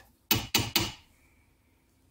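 Three quick light metal knocks within the first second: the small steel head of a paintless-dent-repair hammer, its plastic tip removed, tapped against a steel vise.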